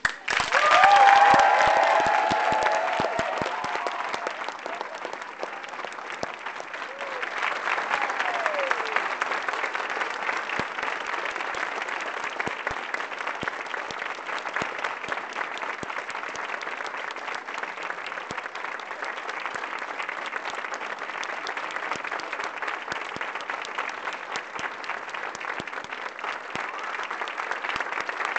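Audience applauding, loudest in the first couple of seconds and then going on steadily at a slightly lower level, with a few voices calling out over it near the start.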